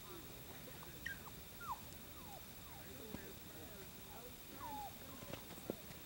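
Faint, distant talk, with a few soft thuds from a horse's hooves stepping on muddy ground near the end.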